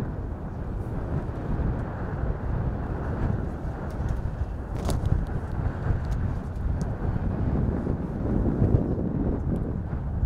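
Wind buffeting an outdoor microphone: a steady low rumble with no voices, and one sharp click about five seconds in.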